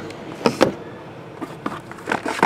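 Two sharp knocks about half a second in, then a few fainter taps: a plastic die tumbling against stacked cardboard card boxes and settling on a tabletop mat.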